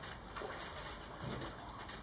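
A bird calling in the background: two low calls about a second apart, over a faint steady hiss.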